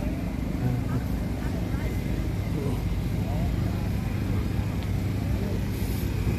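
Busy city street ambience: a steady low motor rumble with the voices of passers-by talking over it.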